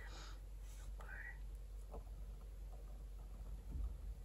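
Faint scratching of a calligraphy dip-pen nib on watercolor paper as letters are written, with a soft breath at the start and a brief, quiet vocal sound about a second in.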